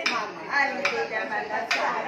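Hand-held wooden sticks struck together in a steady beat, a sharp knock about every second, over women's voices.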